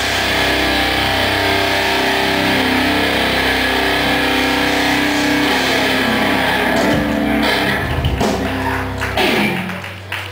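Live heavy metal band: distorted electric guitars and bass hold a ringing chord, then a flurry of drum and cymbal hits from about seven seconds in brings the song to its end.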